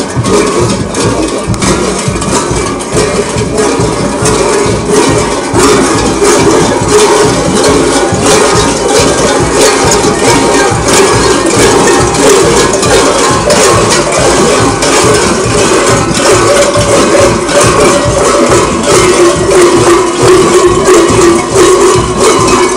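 Loud live folk music from a passing parade group: dense, fast rattling and clicking percussion over a sustained melody line that grows stronger in the second half.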